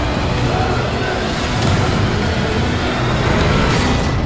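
Film sound effects of a giant wheeled mobile city's machinery and wheels rolling along: a loud, dense, steady mechanical din, heaviest in the low end.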